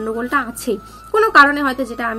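A woman speaking, with a brief pause a little past half a second in.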